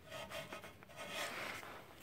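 Faint rubbing in two soft stretches, one just after the start and one about a second in.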